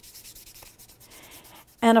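A cotton square scrubbing pastel chalk into sketchbook paper: a faint, dry rubbing hiss.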